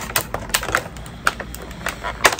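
Irregular light plastic clicks and rattles as a toy action figure's sword and parts are handled and pulled from their plastic packaging.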